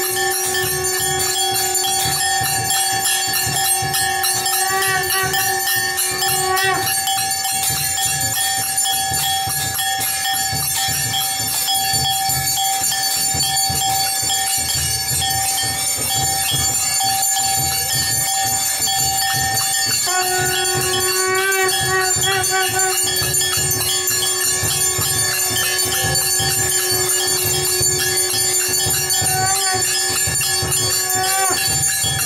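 Temple bells ringing continuously during an aarti, over a low rhythmic beat. A steady held tone sounds with them, stops about seven seconds in and comes back around twenty seconds.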